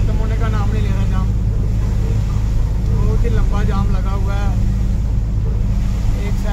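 A truck's engine running with a steady low drone, heard from inside the cab while it drives. Voices talk over it in the first second and again about three to four and a half seconds in.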